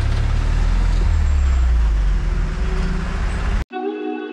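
Small goods truck's engine running, heard from inside the cab: a loud low drone with a rapid, even pulsing. About three and a half seconds in, it cuts off abruptly and guitar music begins.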